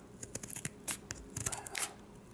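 Scissors cutting into a stiff plastic blister pack: a string of short, sharp snips at irregular intervals, a few a second.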